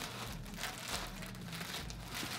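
Plastic poly bags crinkling irregularly as bagged clothing is handled.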